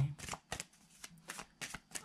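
Tarot cards being shuffled by hand: an irregular run of quick, crisp card clicks and slaps.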